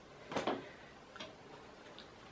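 Clothing being handled: a brief swish of fabric about half a second in as a pair of children's shorts is put aside, followed by a few faint ticks.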